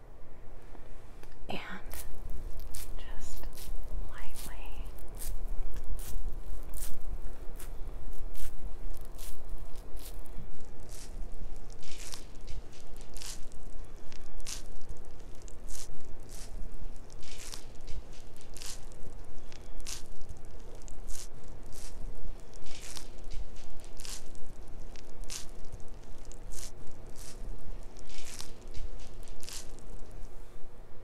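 Cotton round being dabbed and rubbed close against the microphone: a run of short, soft brushing strokes, sparse at first and then about two a second, over a low handling rumble.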